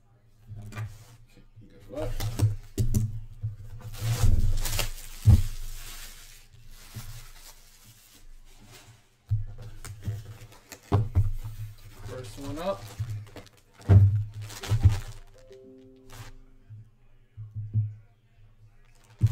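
Cardboard jersey box being opened and handled: irregular scraping, tearing and rustling, with plastic crinkling as a bagged jersey is lifted out, over background music.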